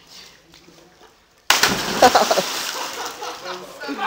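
A person jumping into a swimming pool: a sudden loud splash about a second and a half in, then water spraying and sloshing as it dies away.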